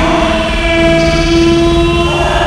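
Loud, effect-processed cartoon soundtrack: several steady held tones sounding together like a horn chord, shifting to new pitches partway through.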